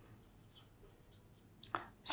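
Faint strokes of a marker pen writing on a whiteboard, with one short, slightly louder sound near the end.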